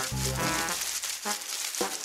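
Background music with a steady beat, over the crinkling rustle of artificial plastic leaves being pulled and torn away.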